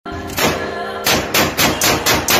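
Gunfire sound effect over a music bed: one sharp bang, then from about a second in a quickening run of shots about a quarter second apart, each with a short ringing tail.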